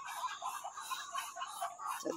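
Faint, irregular soft calls and rustling from a small flock of Muscovy ducks foraging among dry leaves, with a faint high ticking repeating a few times a second.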